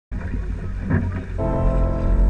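Wind rumbling on the camera microphone with water rushing along the hull of a fast-sailing keelboat, then music comes in about one and a half seconds in, holding steady notes over the rush.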